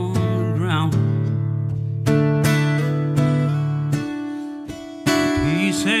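Solo steel-string acoustic guitar strumming and picking chords at a slow tempo. A chord rings and fades about four seconds in, then a fresh strum comes in about a second later, just before the voice returns.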